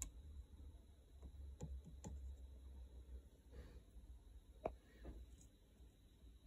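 Near silence: a low steady room hum with a handful of faint, isolated clicks and taps, the clearest a little under five seconds in.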